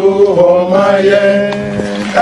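Male chanting, holding long, steady notes with slight bends in pitch.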